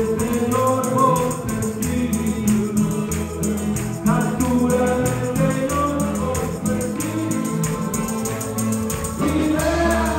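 Live church worship band playing a gospel song with a steady beat: keyboard, bass guitar and drum kit, with voices singing along.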